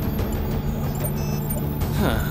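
Dramatic soundtrack music over a dense low rumble of sound effects.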